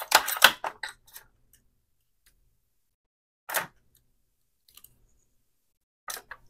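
Heat-resistant tape being pulled and torn from a desktop tape dispenser, with paper rustling. A cluster of short scratchy sounds comes in the first second, and a single short tear a little past halfway.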